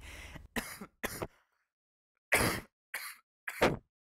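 A young man coughing into his hand: five short coughs in quick succession, the loudest about halfway through.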